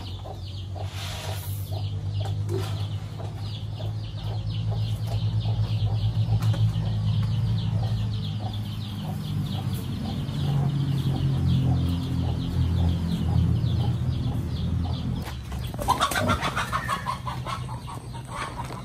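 Chickens clucking around a pig pen while pigs eat pellet feed at the trough, with rapid chomping over a low steady drone that stops about fifteen seconds in.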